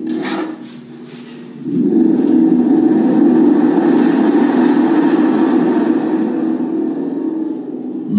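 Large thunder gourd, a gourd spring drum, played by shaking: its hanging coil spring vibrates a membrane and the big gourd body echoes it out through its carved holes as a sustained thunder-like rumble. The rumble starts about two seconds in.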